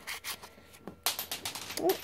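A small embossed brass ring blank dropped, clattering on the work table in a quick run of rattling clicks that starts about a second in and lasts under a second.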